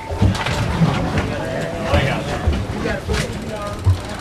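Indistinct voices of people talking and calling out on a fishing boat over a steady background of boat and wind noise, with a few short knocks.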